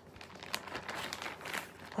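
Irregular rustling and crinkling as a cross-stitch piece on its fabric is handled and moved about.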